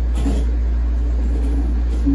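A steady low rumble fills a gap in the guitar music, with a brief soft rustle near the start and another near the end.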